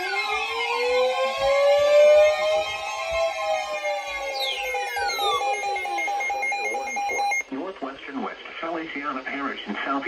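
Several NOAA weather alert radios sounding their tornado-warning alarms at once: steady, pulsing electronic tones overlapped by sliding siren-like tones. The alarms cut off about seven and a half seconds in, and a radio's voice begins reading the warning.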